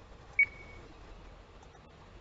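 A single short, high electronic beep about half a second in, with a brief ringing tail. A faint click follows near the end.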